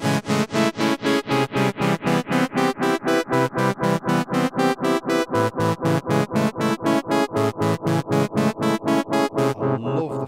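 A rapidly repeating synthesizer note, about four to five a second, played through an Eventide Rose delay pedal. Its top end darkens from about three seconds in as a knob on the pedal is turned. Near the end the notes stop and the delay repeats trail on.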